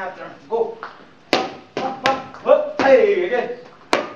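Boxing gloves striking focus mitts in a pad drill: a few sharp smacks, two in quick succession in the middle and one more at the end, with a voice calling out between them.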